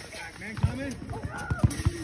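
Voices of several people talking and calling out at a distance, with a few short low thumps between about half a second and a second and a half in.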